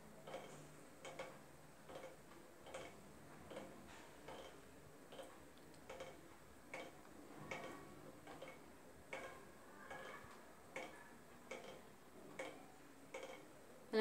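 A faint, even ticking, about five ticks every four seconds, over near-silent room tone.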